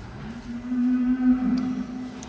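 Dairy cow mooing: one long, low moo that rises in pitch at the start and then holds steady for nearly two seconds.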